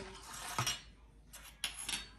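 A few light clicks and clinks of small objects handled on a tile countertop, a small metal weighing scoop and a pocket digital scale being set out, in two short clusters about half a second in and again near the end.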